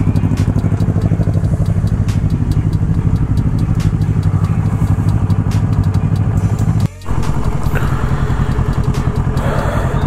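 Motorcycle engine idling and running at low speed, a steady pulsing drone. The sound drops out briefly about seven seconds in, then the drone carries on.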